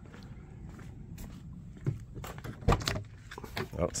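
Footsteps and handling noises, then a few clicks and a low thump as the truck's door is opened.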